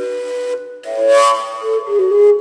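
Fujara, the long Slovak overtone shepherd's flute, playing a melody: a breathy blast into high overtones about a second in, then settling onto lower held notes.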